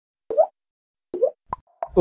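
Animated logo intro sound effect: four short synthetic pops, the first two sliding up in pitch, the last two coming in quicker succession.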